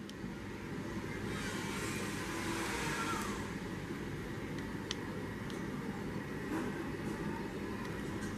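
Steady low background rumble and hiss, with a single faint click about five seconds in.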